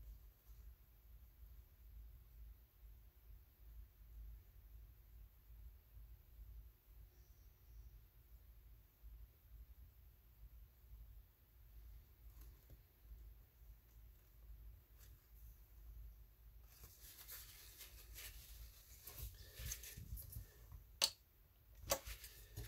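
Near silence with a faint low hum for most of the stretch. In the last few seconds come soft scratchy brushing and handling sounds, as a flat brush works on watercolor paper, with a sharp click near the end.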